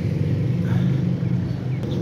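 Steady low engine hum of a motor vehicle running.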